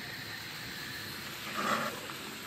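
Steady hiss of a lit gas stove burner under a pot of milk being warmed, with a brief soft noise near the end.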